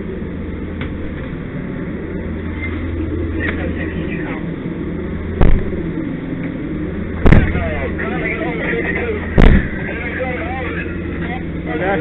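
Steady low drone of a fire engine running, broken by three loud, sharp bangs about two seconds apart.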